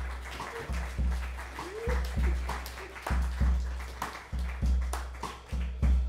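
A live improvising band's guitar and drums play a slow, heavy, repeating figure. Deep low hits come in pairs about once a second, each ringing on, with guitar sounding over them.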